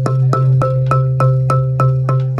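Marimba struck over and over on one note, about three even strokes a second, over a steady low tone: a sound check of the miked front ensemble.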